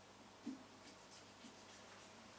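Faint scratching of a thin knife cutting into a pumpkin's rind, with a soft low thump about half a second in.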